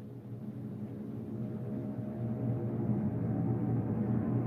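Opera orchestra holding low sustained chords that swell steadily louder, in an old 1938 mono recording.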